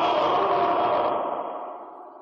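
A chorus of soldiers' voices shouting one long "yes!" in unison, held and then dying away in a long echo.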